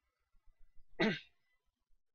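A man clearing his throat once, briefly, about a second in.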